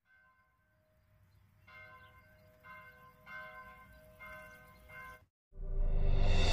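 A bell struck about five times, roughly once a second, faint, each strike ringing on into the next. Near the end, louder music starts.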